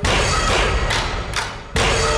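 Dramatic background score: heavy, reverberant drum hits, one at the start and another near the end, with fainter strikes between them.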